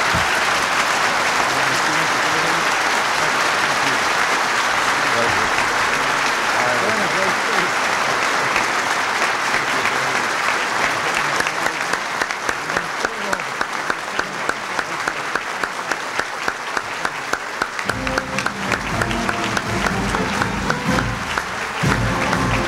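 Audience applause at the close of a speech: loud, dense clapping that about halfway through settles into a steady beat of roughly two to three claps a second. Music comes in under the clapping near the end.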